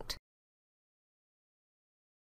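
Total silence, apart from the last syllable of a spoken word cut off right at the start.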